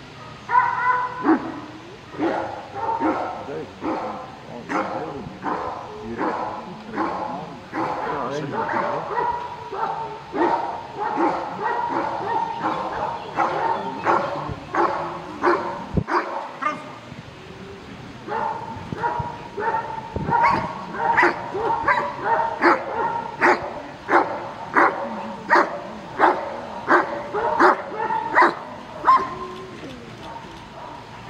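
Belgian Malinois barking steadily at a bite-suited helper, about two sharp barks a second, in the bark-and-hold guarding exercise of a protection exam. The barking pauses briefly about halfway through, then comes back louder and a little faster.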